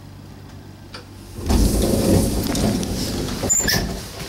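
Ropeway gondola's cabin door sliding open about a second and a half in, with a loud rumbling rattle that runs on, and a few sharp clicks near the end.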